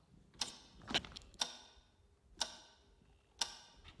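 A clock ticking about once a second, marking the running time of a timed silence challenge.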